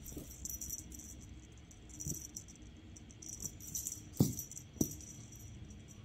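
Light jingling rattle of a cat wand toy's beaded string in short bursts as the toy is jiggled and batted, with a couple of soft thumps about four and five seconds in.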